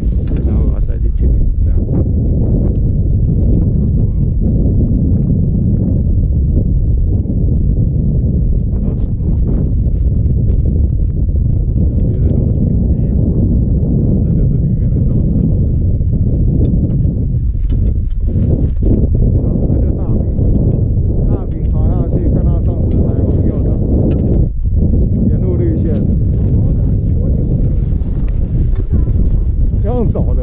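Wind buffeting a GoPro Hero5 Black's microphone: a loud, steady low rumble, with faint voices now and then.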